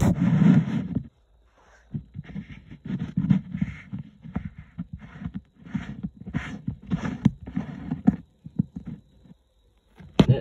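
Muffled rustling and knocking of handling noise on a phone's microphone, in irregular short bursts, with near-silent gaps about a second in and again near the end.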